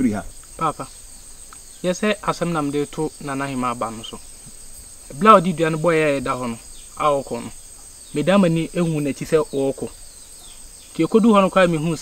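A steady high-pitched drone of insects chirring in the forest, running under men's conversation, which is the loudest sound.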